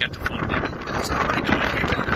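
Wind buffeting the microphone in a rough, uneven rumble over street traffic noise, with low, indistinct voices.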